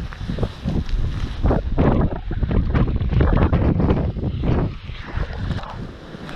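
Wind buffeting the microphone in a dense low rumble, mixed with frequent rustles and knocks from the fish and landing net being handled.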